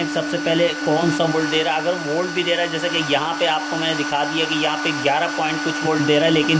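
Server power supply's cooling fan running with a steady whine under a man's voice.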